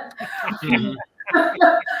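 People laughing, in two stretches with a short break about a second in.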